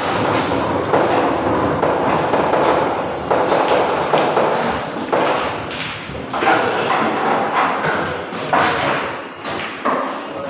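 Pool balls clacking and rolling as they are gathered into a triangle rack on a pool table, with repeated thuds of balls knocking together and against the wood.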